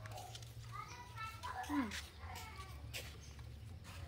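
A high-pitched voice in short calls between about one and two seconds in, with one sliding down in pitch, over a steady low hum.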